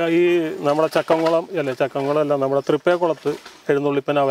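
A man talking in Malayalam.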